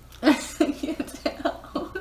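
A person laughing in a run of short bursts, opening with a sharp cough-like burst about a quarter of a second in.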